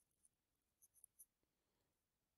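Near silence: room tone with a few faint ticks about a second in.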